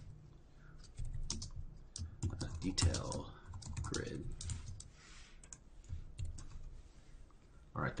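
Typing on a computer keyboard: irregular runs of keystrokes as a line of code is entered.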